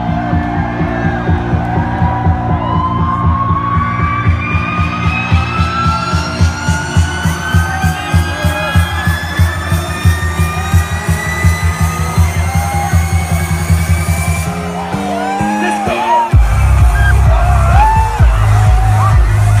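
Loud electronic dance music: a build-up with a steady bass beat under a slowly rising synth sweep, a short break near the end, then the beat coming back in with heavy bass. The crowd cheers and whoops over it.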